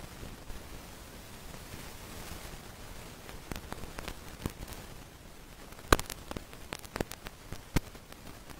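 A few sharp, scattered clicks over a steady faint hiss, the loudest one about six seconds in.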